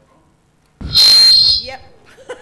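Public-address feedback squeal from a handheld microphone: a sudden very loud burst about a second in, with a high whine held at one pitch for about half a second before it dies away.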